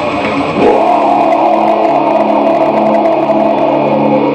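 Distorted electric guitar playing a heavy metal riff: rapid picking that breaks off about half a second in, then a chord left ringing.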